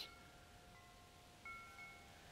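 Faint chimes ringing: a few clear, high tones sounding one after another, the clearest about one and a half seconds in.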